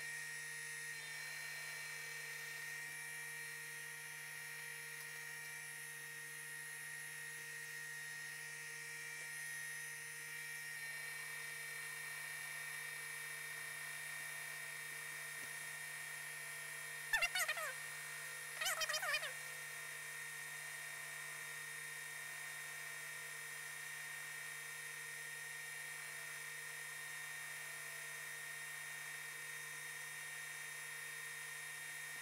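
Industrial sewing machine's motor running with a steady hum and whine. Two short, louder bursts come a little past halfway.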